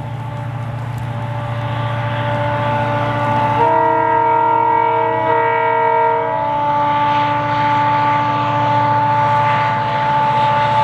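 EMD-built WDP4 diesel locomotive's two-stroke V16 engine running, with a steady high whine, growing louder as it approaches. About a third of the way in, its multi-tone horn sounds one long blast of about three seconds.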